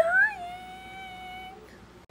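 A woman's voice, hoarse from laryngitis, holding one high, thin note. It bends up briefly at the start, then holds level for about a second and a half before fading.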